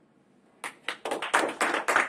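A small group applauding by hand. The clapping starts suddenly about half a second in and runs at a few sharp claps a second, growing louder.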